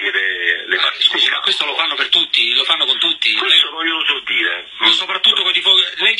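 Speech only: men talking back and forth in a radio phone conversation, with the thin, narrow sound of a telephone line.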